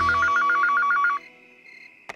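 Landline telephone's electronic ringer warbling fast between two pitches, then cutting off a little over a second in. A low drone sits under the ring, and a high held tone lingers after it stops.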